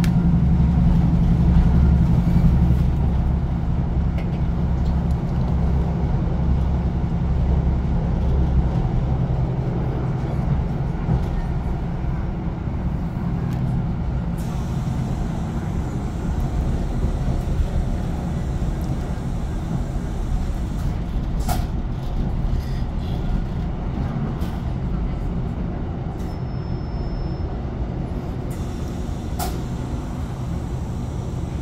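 Class 156 Sprinter diesel multiple unit heard from inside the passenger saloon while running: the drone of its underfloor Cummins six-cylinder diesel is strong at first, then eases off and fades over the first ten seconds or so, leaving a steadier rumble of wheels on track. Two sharp knocks come in the second half, with a brief high whine shortly before the last.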